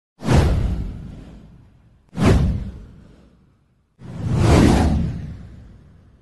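Three whoosh sound effects with a deep low end. The first two hit suddenly and fade over about a second and a half; the third swells in more gradually about four seconds in and fades slowly.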